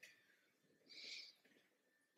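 Near silence: room tone, with one faint, brief hiss about a second in.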